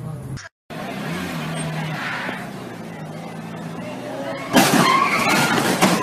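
A car running, then a sudden loud burst of noise about four and a half seconds in.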